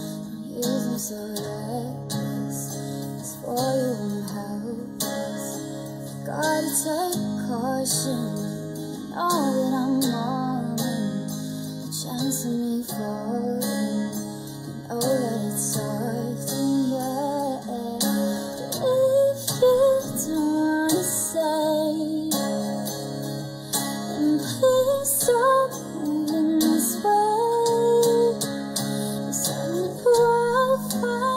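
A woman singing a melody while accompanying herself on guitar.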